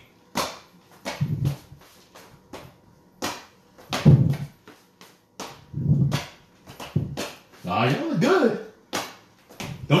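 Feet stepping and landing on a floor in a quick, uneven series of steps as the seven-count jump line-dance step is danced with turns to the left. Short voiced sounds come in between the steps.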